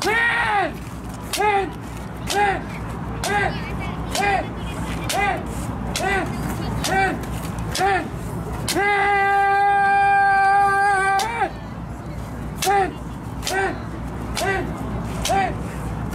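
Kendo kiai: a kendoka's short, arching shouts of "men" about once a second, each with the crack of a bamboo shinai striking. Partway through, one long held kiai lasting about two and a half seconds breaks the run, and then the short shouts and strikes go on.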